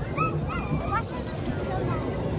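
A young child's high-pitched squeaky vocalising: a few short squeals that rise and fall in pitch during the first second, over a steady low hum.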